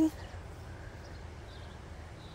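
Faint birds chirping a few times over a steady low outdoor background.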